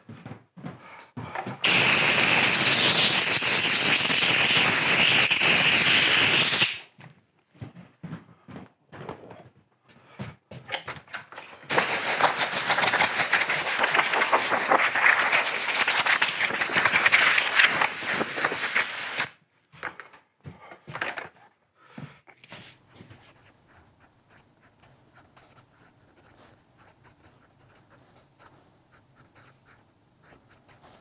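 A compressed-air blow gun on a coiled air hose blows in two long hissing blasts, the first about five seconds and the second about seven and a half, with a few knocks between them. Near the end comes the faint scratch of a pen writing on quilted fabric.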